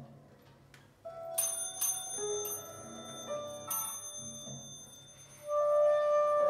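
Sparse free-improvised jazz: a few sharp bell-like metallic strikes that ring on, then a soprano saxophone comes in with a loud held note near the end.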